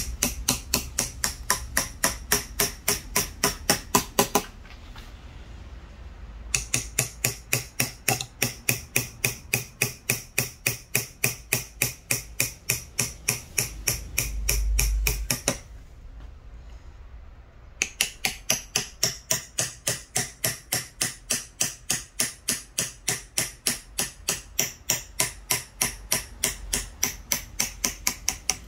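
Small hammer tapping a carving knife into wood in quick, even strikes, about four a second, cutting along the outline of a carved character. The tapping comes in three runs, broken by short pauses about five and sixteen seconds in.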